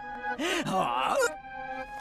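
A cartoon character's voice bent by a pitch-warping effect, so that it swoops up and down in pitch, over held background music notes. The voice fades about two-thirds of the way in, leaving the music.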